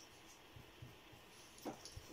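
Near-silent room tone with faint pencil scratching on paper. One brief squeak comes about three-quarters of the way in.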